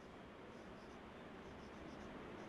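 Faint marker pen writing on a whiteboard: a few short, soft squeaking strokes over quiet room hiss.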